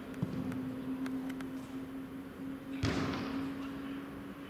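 A football kicked on a grass pitch: one sharp thud about three seconds in, with a short rush of noise after it, and a few faint taps before it, over a steady low hum.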